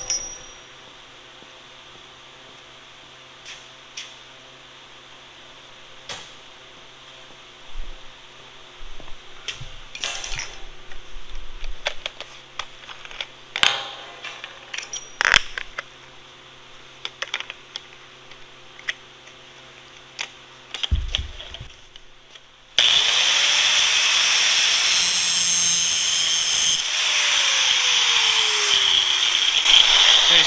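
Scattered metallic clicks and clinks of the angle grinder being handled and its disc changed. About 23 seconds in, the angle grinder starts and runs loud and steady, its thin cutoff wheel cutting off the protruding end of the pin.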